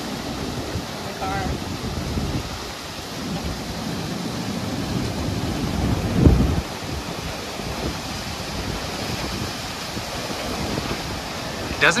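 Strong derecho wind gusting, buffeting the microphone with a heavy buffet about six seconds in, over a steady hiss of wind-driven freezing rain and sleet.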